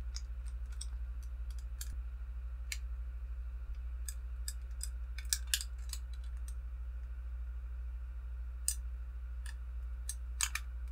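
Scattered light clicks from the small fold-out armor flaps on the legs of a Hot Toys Iron Man Mark V diecast figure as they are worked open and the figure is handled, with a cluster of clicks around the middle. A steady low hum runs underneath.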